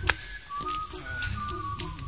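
Background music: a single high, wavering melody line over lower held notes, after a short sharp click at the start.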